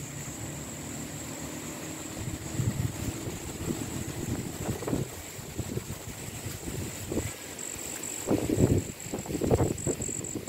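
Wind buffeting the microphone in uneven gusts, heaviest near the end, over a steady high-pitched tone.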